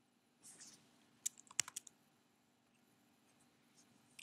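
A few computer keyboard keystrokes: a quick cluster of sharp clicks about a second in, after a faint brief hiss.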